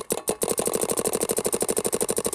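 Planet Eclipse Geo 4 electropneumatic paintball marker firing in ramping mode, a fast even string of shots at about a dozen a second. It is shooting on a nearly empty air tank, below 1,000 psi, with the air running out.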